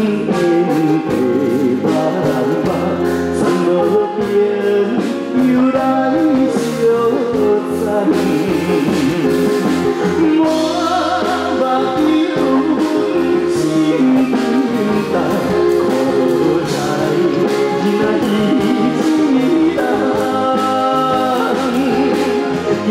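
Live band music, with drum kit, electric guitar and keyboard, accompanying men singing a song into microphones over a PA system.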